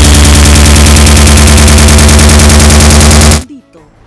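A very loud, harsh, distorted buzzing rattle of rapid, even pulses, near full scale, typical of a digital audio glitch at an edit point. It cuts off suddenly shortly before the end, and a woman's voice begins.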